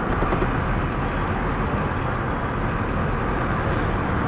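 Steady engine and road noise of a moving car, heard from inside the cabin.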